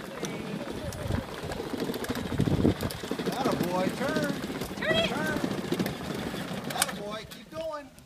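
A child's battery-powered ride-on toy pickup truck rolling over rough asphalt, its hard plastic wheels giving a steady rough rumble. Short voice calls come over it twice, in the middle and near the end.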